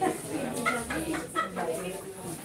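Indistinct chatter of several people talking at once as they mingle in a hall.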